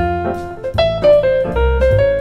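Solo jazz piano improvising: a right-hand single-note line moving step by step over left-hand bass notes and chords.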